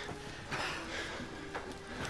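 Footsteps and clothing rustle of several people moving together on wooden boards, in soft uneven swells, over a faint held music tone.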